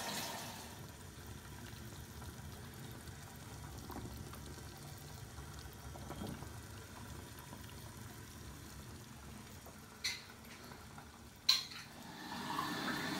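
Water simmering in a saucepan, with a glass candle jar held in it to melt down the old wax: a low, steady bubbling. Two sharp knocks near the end.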